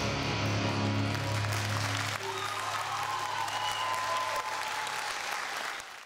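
The song's final held low chord rings out and stops about two seconds in, leaving audience applause that carries on and fades out at the end.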